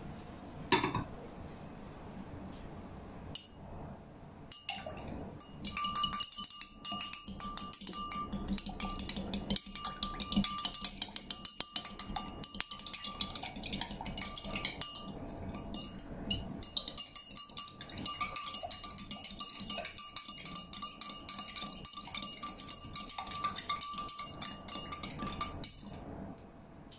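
A metal spoon stirring in a glass tumbler of water, starting about four seconds in: rapid clinking against the glass, which keeps the glass ringing with a steady tone.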